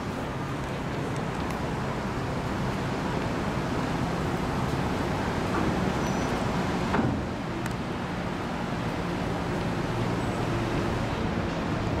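Steady city traffic noise with a low hum underneath, with a single brief thump about seven seconds in.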